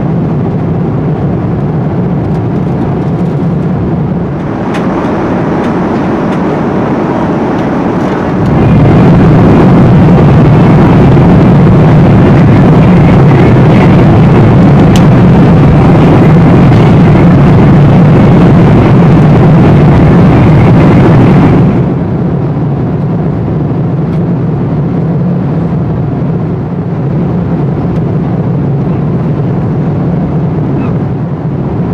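Steady cabin noise of an Airbus A340-300 airliner in flight: a loud, even rush of engines and airflow with a low hum underneath. From about eight seconds in it grows louder and brighter for some thirteen seconds, then settles back to its earlier level.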